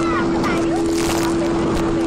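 Steady drone of the towing speedboat's engine under a rush of wind and water on the microphone, with brief voice cries in the first second.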